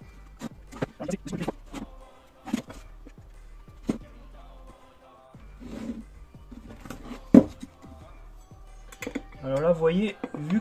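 Scattered sharp clicks and knocks from hands working a cured silicone mould loose from its plexiglass base, over faint background music. A voice starts near the end.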